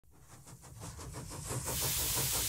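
Steam engine running with a quick, even chuff and a steady hiss of steam, fading in over the first second and a half.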